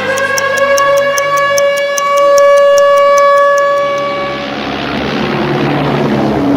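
Music: fast, even ticking like a clock, about five ticks a second, under one long held note. The ticking and the note give way, about four seconds in, to a swelling wash of noise.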